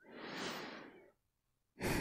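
A woman's soft sigh, about a second long, swelling and fading, then another breathy exhale beginning near the end.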